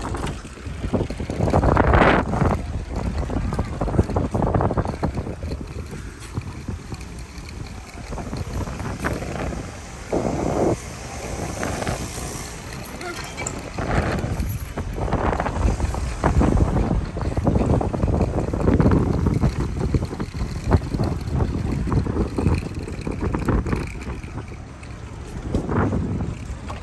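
Wind buffeting the microphone of a moving bicycle rider, gusting unevenly, over a low rumble from the bike rolling across brick paving.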